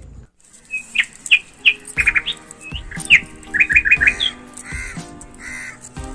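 Birds chirping in short, quick repeated calls, with background music with a beat coming in about two seconds in.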